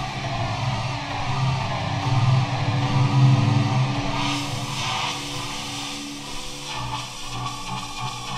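Synthesizer music played live from a Novation Impulse MIDI keyboard driving the Synthmaster software synth, with held notes, loudest in the first half. A burst of bright noise comes about four to five seconds in.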